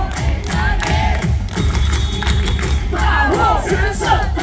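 A loud cheer song with a heavy, pounding bass beat plays over the stadium loudspeakers while the crowd in the stands chants along.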